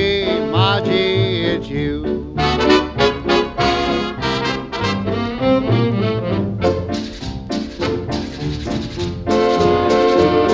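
Big band dance record from the 1940s to early 1950s. A held, wavering note ends about two seconds in, then the band plays an instrumental passage with brass.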